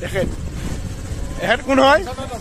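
Motorcycle engine idling in a low, steady rumble, with a man's voice calling out near the end.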